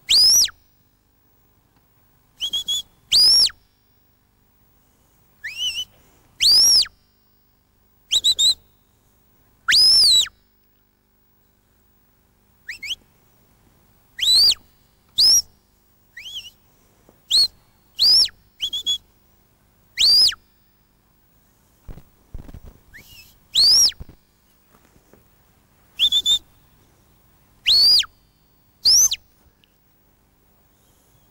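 A sheepdog handler's whistle commands to his working dog: short, shrill blasts in ones and pairs every second or two, many sweeping up and falling away, steering the collie as it drives the sheep.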